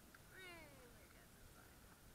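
A single short, faint, high-pitched call from a meerkat, falling in pitch, as the animal is pushed by hand into a wooden box.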